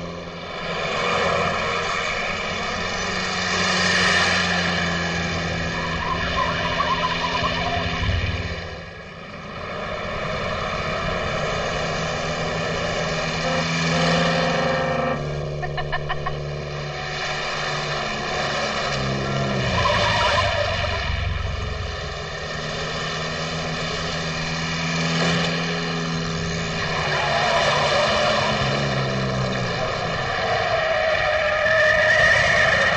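Sports car engine running hard at speed, its pitch climbing and dropping several times as it accelerates and shifts, with the loudness swelling and easing every few seconds.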